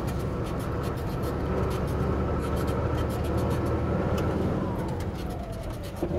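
Truck engine running steadily under way, heard from inside the cab, with rattles and knocks from driving over a rough dirt road. A faint tone slides down in pitch near the end.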